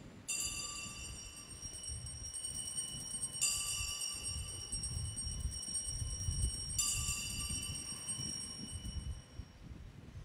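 Altar bells rung three times, about three seconds apart, each ring a cluster of high bright tones left to fade out: the signal for the elevation of the consecrated host.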